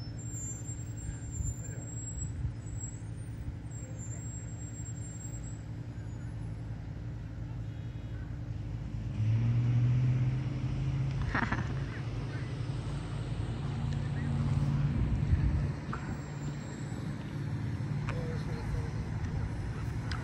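Low steady hum of a running engine, growing louder about nine seconds in and again around fifteen seconds, with one sharp click a little past the middle.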